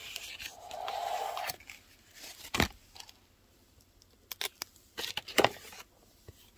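Sizzix Big Shot manual die-cutting machine being cranked, its rollers pressing a stack of plates and cardstock shims through with a rough grinding sound for about a second and a half. Then come sharp clacks and paper rustling as the stiff cardstock shims and embossing plates are handled and taken off, with the loudest knocks a little after two seconds in and near the end.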